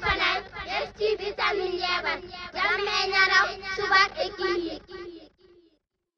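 A high voice singing the channel's jingle, with its pitch gliding up and down, cutting off about five seconds in.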